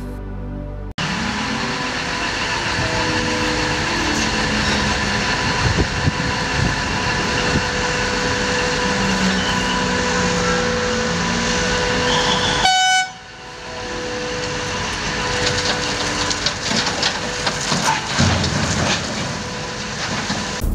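Heavy mining machinery at work as an electric rope shovel loads rock into a large haul truck: a loud, steady mechanical din with a held hum, scattered knocks, and a short horn-like tone about 13 seconds in.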